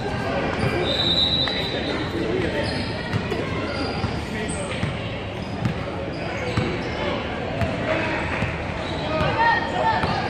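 A basketball being dribbled on a hardwood gym floor, its bounces echoing in a large hall, over the indistinct chatter of voices.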